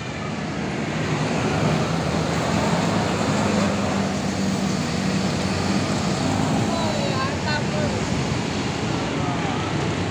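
A large tour bus driving close past, its engine drone over steady road traffic noise, with motorcycles passing.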